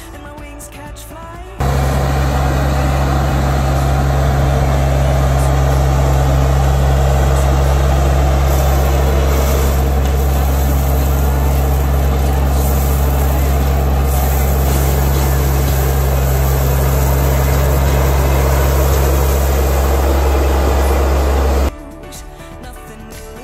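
Branson 3520H tractor's diesel engine running steady and loud at close range while the front loader tips gravel out of its bucket, the stones rattling as they spill. The sound cuts in sharply about a second and a half in and cuts off just before the end.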